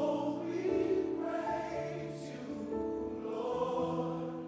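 Gospel choir singing long held chords that shift every second or so, with no clear words.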